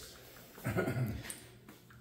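A man's short wordless vocal sound, lasting about half a second, near the middle.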